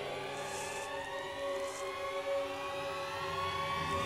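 Suspense film score: a sustained drone of several layered tones, all slowly rising in pitch as tension builds.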